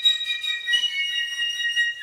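Two flutes playing high, held notes that overlap, the pitches changing in steps.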